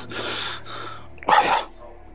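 A man breathing hard: a long, breathy exhale, then one sharp, loud huff of breath about a second and a half in.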